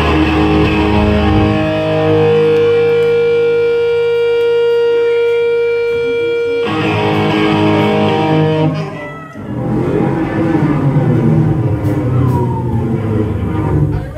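Ska-punk band playing live, guitar to the fore: a held, ringing chord that cuts off sharply about six and a half seconds in, then, after a brief drop, busier playing resumes.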